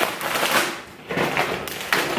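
Plastic packaging and shopping bags crinkling and rustling as groceries are handled, in two bouts of crackling.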